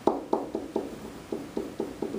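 A pen tapping and knocking on an interactive whiteboard as words are handwritten: about eight short, dull taps at irregular spacing.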